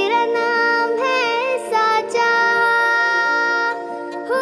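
Bollywood film song: a high voice sings long, held notes with wavering ornaments over sustained chords, pausing briefly just before two seconds in and again near the end.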